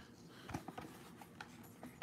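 Faint handling of a trading-card blister pack, cardboard backing and plastic shell: a few short, scattered clicks and taps as it is picked up.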